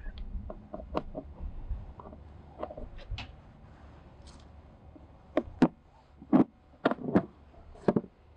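A key clicking in the lock of an RV's outside-shower hatch, with faint scattered clicks at first. Then come several sharper clicks and knocks in the last few seconds as the latch gives and the small hatch door is opened.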